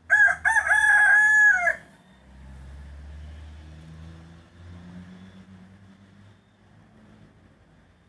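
A bantam (garnisé) rooster crowing once, a single loud crow lasting nearly two seconds. After it comes a faint low hum.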